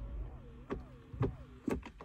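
A new Ford Ranger's electronic gear selector shifting itself from Drive back to Park after the engine is switched off: three sharp clicks about half a second apart as it steps through the positions, over a faint wavering motor whine.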